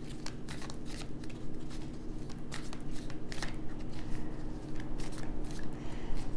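A tarot deck being shuffled by hand: a run of quick, irregular soft card clicks and snaps, over a faint steady hum.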